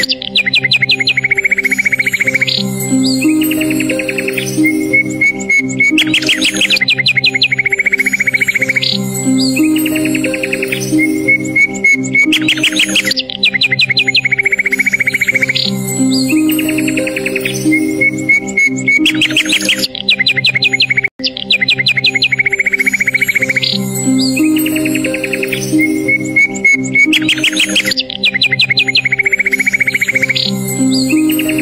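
Calm instrumental background music with recorded birdsong mixed over it: the same bird trills and chirps come round again about every six and a half seconds, as a loop. There is one momentary dropout about two-thirds of the way through.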